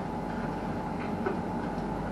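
Steady low mechanical hum inside a tower crane cab, with a few faint steady low tones under an even rumble and no distinct knocks.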